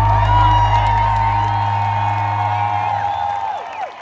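The last held note of a live concert song dying away through an arena sound system, its deep bass fading out, while the crowd cheers and whoops over it. The sound drops away near the end.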